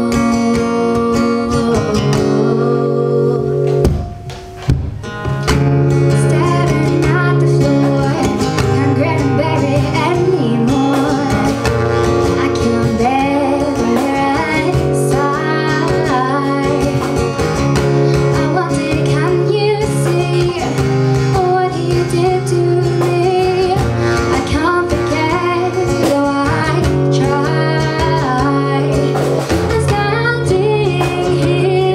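A woman singing with an acoustic guitar, live through a microphone, with a short break about four seconds in.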